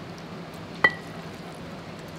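A metal spoon clinks once against a bowl, a single sharp tap with a short ring, while rice is spooned from one dish into a pot.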